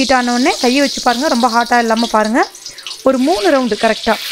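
Murukku dough strands frying in hot oil in a kadai, with a steady sizzle and bubbling. A voice talks over it almost throughout, with a short pause a little past halfway.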